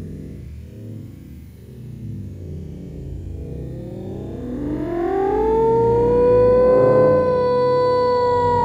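Background music, and from about halfway a loud siren-like tone that rises in pitch and then holds steady.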